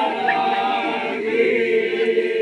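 A large group of voices chanting together in long, held notes, a Toraja funeral chant sung by the crowd.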